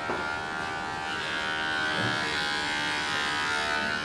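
Steady electric buzzing hum of a small motor.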